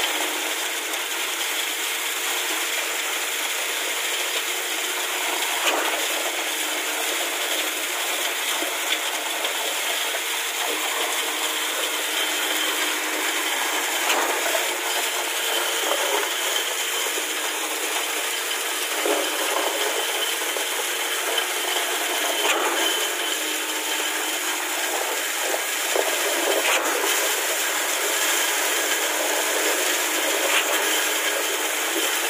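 Concrete pump running while wet concrete is discharged through its delivery hose: a steady rattling noise with occasional sharp knocks every few seconds.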